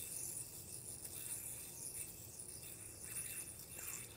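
Faint steady whirr of a spinning yoyo, with its string rubbing and rattling lightly as it is swung and popped between the hands in a string trick.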